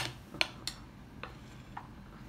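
Metal spoon clinking against a glass dish while scooping thick cake batter: two sharp clicks in the first second, then two fainter taps.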